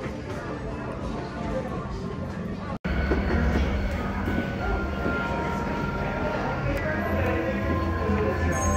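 Ambient music with a low rumbling drone and long held tones, over faint background chatter of people. The sound drops out for an instant about three seconds in.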